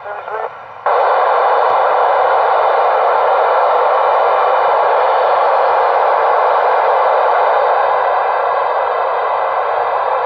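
Icom ID-4100 transceiver's speaker giving a loud, steady hiss of receiver noise that cuts in abruptly about a second in, with faint steady tones in it. The radio's squelch is open on the TEVEL-5 satellite's 436.400 MHz downlink in D-Star mode, with no voice coming through. The hiss eases slightly near the end.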